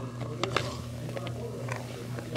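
Spatula stirring a thick, airy whipped mixture in a stainless steel mixing bowl: soft, irregular wet squelches and crackles, like the ocean, over a steady low hum.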